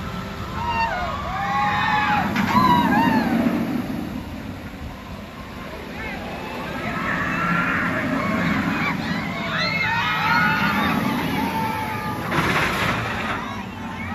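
Park crowd voices and shouts over a low rumble from a steel roller-coaster train running along its track, with a brief whooshing surge near the end.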